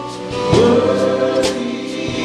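A live worship band playing a slow hymn: drum kit with cymbal strikes about half a second and a second and a half in, over bass and guitar, with voices singing along.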